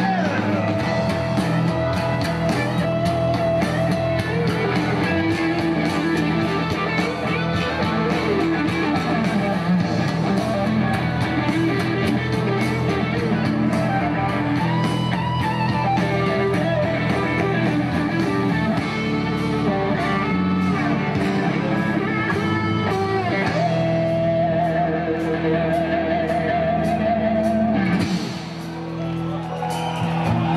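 Live rock band playing an instrumental passage led by an electric guitar solo over bass and drums. Near the end the guitar holds a wavering, vibrato note.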